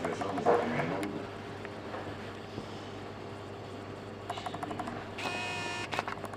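Room sound with a steady low hum: a voice for about the first second, then a rapid pulsing tick about four seconds in, and a short electronic buzzing tone near the end.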